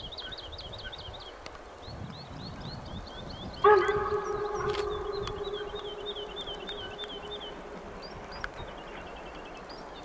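Steam locomotive whistle from an approaching German steam train: one long blast that starts suddenly a few seconds in, loudest at first and then fading away over about four seconds. A bird chirps repeatedly throughout.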